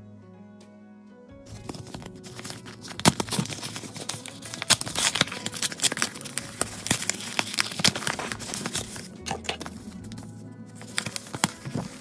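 Background music, cut off about a second and a half in. After that, a paper kit envelope is peeled open and its paper contents handled, crinkling and rustling with many sharp crackles.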